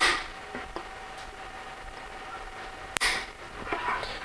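Wire cutters snipping through the protruding metal staple ends of a plastic-welder repair on a 3D-printed plastic helmet: two sharp clicks, one at the very start and one about three seconds in.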